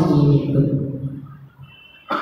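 A man's preaching voice finishing a drawn-out phrase, then fading off into a brief pause.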